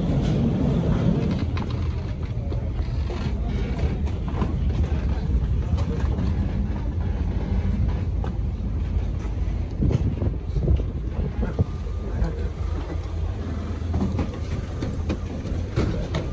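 Passengers' footsteps on a ferry's boarding walkway and stairs, a scatter of short steps and knocks over a steady low rumble, with faint chatter.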